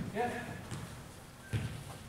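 A short shout of "yes", then a single dull thud of a soccer ball being kicked on artificial turf about one and a half seconds in.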